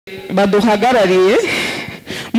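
A person's voice saying a short phrase, which trails off before a pause near the end.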